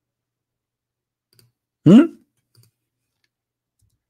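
Near silence, broken about two seconds in by a man's short, rising 'hmm?', with a few faint clicks around it.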